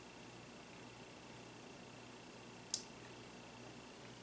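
Quiet room tone with a faint, steady high-pitched whine, broken by a single short click a little under three seconds in.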